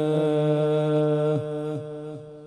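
A male qari chanting the Quran in melodic tilawat, holding one long steady note. The note drops and breaks off about a second and a half in, trailing away in echoes.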